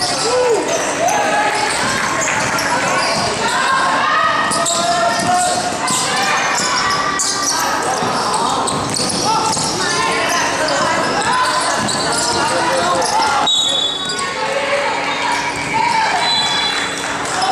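Basketball game sounds: a ball bouncing on the court among several players and spectators shouting and calling out, with a short referee's whistle near the end.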